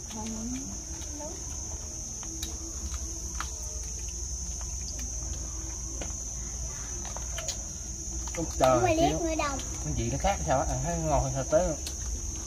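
Insects chirring in one steady high-pitched tone, with a few faint clicks and taps.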